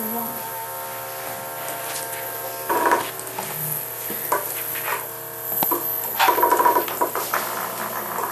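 Several Hexbug Nano vibrating toy bugs buzzing on a tile floor: a steady whine of many small vibration motors at slightly different pitches, with louder rattling bursts about three seconds in and again after six seconds.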